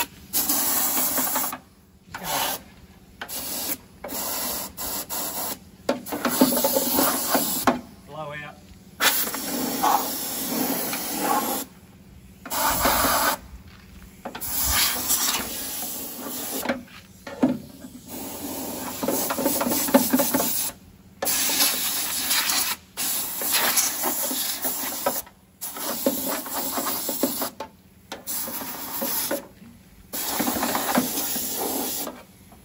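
Compressed-air gun on an air hose hissing in repeated bursts of one to three seconds with short pauses between, as the trigger is squeezed and released to clear debris out of the inside of a steel ute tailgate.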